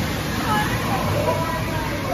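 Steady rushing noise of a river-rapids raft ride, with indistinct voices over it.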